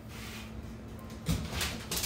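Kitchen oven door being pulled open by its handle: a clunk and a short run of clicks and rattles in the second half.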